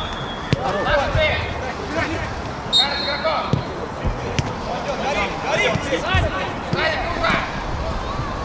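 A football being kicked on an artificial-turf pitch, a few sharp knocks of boot on ball, over players shouting to one another during play.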